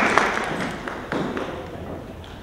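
Scattered audience clapping in a hall, the claps thinning out and fading away.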